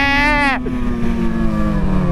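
Motorcycle engine running under way at a steady pitch that slowly falls as the throttle eases, over wind rush on the microphone.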